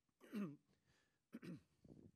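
A man clearing his throat twice, about a second apart.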